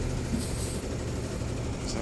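Tow truck's engine running in a steady low drone while its winch draws a car slowly up onto the flatbed.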